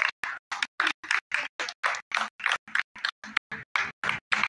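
A few people clapping their hands in applause, about five claps a second, each clap short and sharp with silence between.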